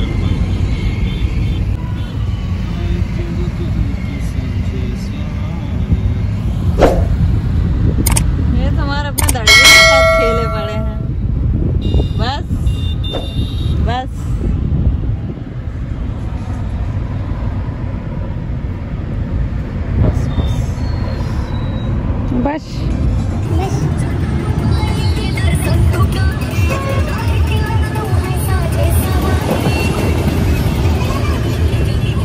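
Steady road and engine noise inside a moving car's cabin. About ten seconds in, a loud pitched tone with several overtones sounds for a second or so.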